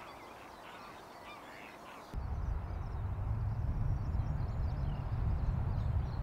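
Waterfowl calling over quiet morning ambience. About two seconds in the sound changes abruptly to a louder steady low rumble, with faint bird chirps above it.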